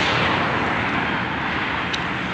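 Steady rushing outdoor noise along a road, with one short click near the end.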